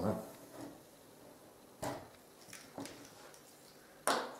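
A few light clicks and taps from handling a pencil and a length of square plastic downspout on a workbench, the sharpest a little under two seconds in, followed by two fainter ones.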